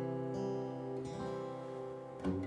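Acoustic guitar played softly, chords ringing and slowly fading.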